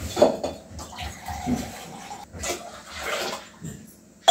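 Kitchen sounds: splashes of water and intermittent knocks of metal utensils at a gas stove.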